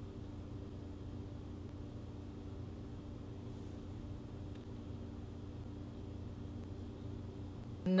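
A faint, steady low hum with several fixed pitches that never change. It cuts off abruptly at the very end.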